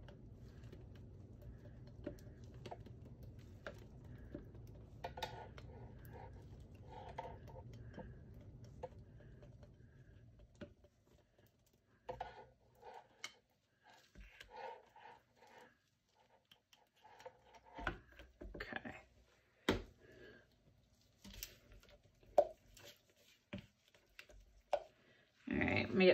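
Stick blender running steadily in a bowl of soap batter, then stopping about ten seconds in. After that come scattered light clicks and knocks as a spatula works the batter and the bowl.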